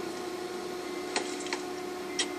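Two sharp computer-keyboard key clicks, a third of a second apart a little past halfway, over a steady hum.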